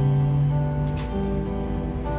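Two acoustic guitars strumming a slow chord accompaniment between sung lines, the chord changing about a second in.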